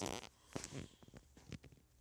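A few faint, irregular taps and clicks from fingers working a phone's touchscreen app.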